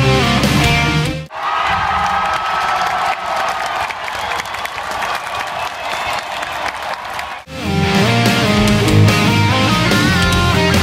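Heavy electric-guitar rock music, cut off abruptly about a second in. A large arena crowd cheers and applauds for about six seconds, then the music comes back.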